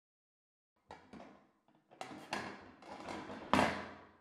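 BOJ professional crank can opener cutting through the lid of a large tin can: irregular bursts of metal scraping as the handle is turned. The cutting starts about a second in and grows louder, with the loudest crunch near the end as the cut nears completion.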